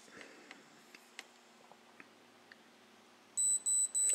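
ReliOn Premier BLU blood glucose meter counting down through a control-solution test, with a few faint ticks, then three short high-pitched beeps near the end as it finishes the reading and shows the result.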